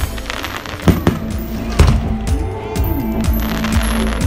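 Fireworks bursting overhead in a string of sharp bangs, the loudest about one and two seconds in, over music playing along with the display.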